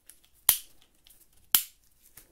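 Two sharp clicks about a second apart from the mode selector knob of a Greenworks 24 V cordless rotary hammer being turned.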